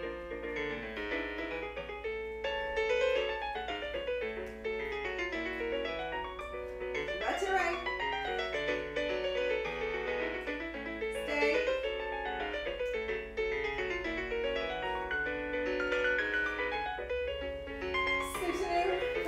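Piano music playing continuously as class accompaniment, with many notes and chords.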